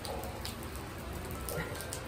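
Heavy rain falling steadily, the drops pattering on an open umbrella held overhead.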